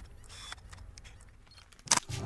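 Camera shutter sound effect: a faint, fading tail with a few soft clicks, then one sharp, loud click just before the end.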